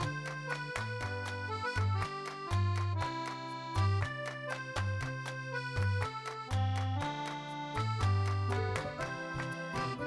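Upbeat background music: quick, evenly spaced notes over a bouncing bass line.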